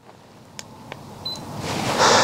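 Handheld laser distance measure taking a reading: two faint button clicks, then a short high beep. Near the end a rush of noise swells up.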